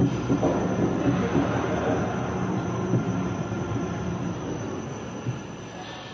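Roller coaster train running on its steel track into the station, a dense rolling rumble with a few knocks that fades gradually as the train slows.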